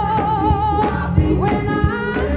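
Gospel choir singing with a woman soloist on a microphone, who holds a long note with vibrato for about the first second, over hand-clapping on the beat.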